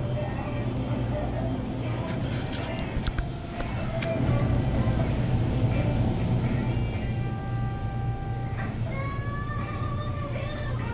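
Small grocery store ambience: background music and people's voices over a steady low hum, with a few sharp clicks between two and three seconds in.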